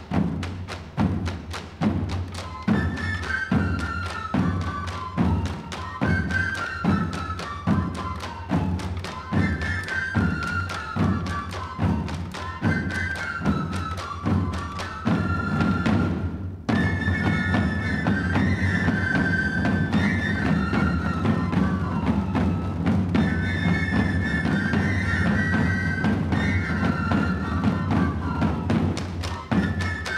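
An ensemble of pipe-and-tabor players (tamborileros) plays a jota in unison: a high three-hole-pipe melody over steady beats on rope-tensioned tabor drums. After a brief break just past halfway the drums change to a continuous roll under the melody.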